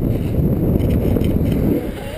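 Wind buffeting the microphone of a camera worn by a moving skier, a loud, low, gusty rumble.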